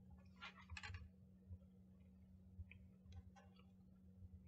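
Near silence: a steady low hum with a few faint clicks and crackles, a small cluster of them just under a second in, from mouths working on Takis Fuego sunflower seeds in the shell.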